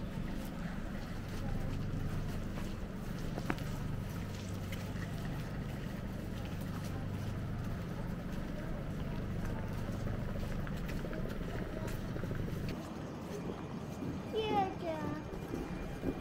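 Steady low hum of a standing PKP Intercity electric multiple unit, its onboard equipment running. A voice is heard briefly near the end.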